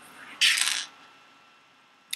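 Small pebbles clicking and rattling together as a hand gathers them up off a paper counting board, one brief burst.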